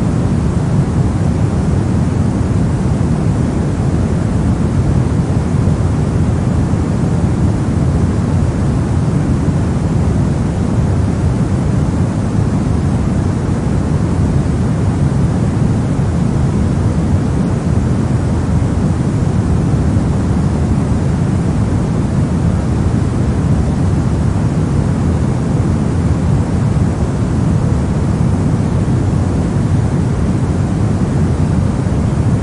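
Steady pink noise: a constant, unchanging hiss, heavier in the low end than in the highs, with no rises, breaks or other events.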